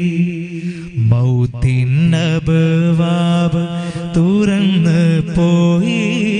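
A man singing an Islamic devotional song through a microphone, holding long, wavering notes over a steady accompaniment. A few sharp percussive hits fall in the middle.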